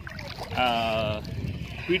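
A man's voice drawing out one long vowel for about a second, over a low rumbling background noise.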